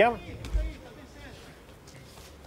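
Live MMA broadcast: the cage-side sound is mostly quiet, with faint distant voices and one dull, deep thud about half a second in.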